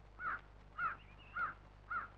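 A crow cawing four times, short calls about two a second.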